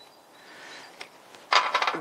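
Hard 3D-printed nylon puzzle rings being worked apart by hand: a faint rubbing and a small click, then a short clatter of rings knocking together near the end as a ring is pulled free of the chain.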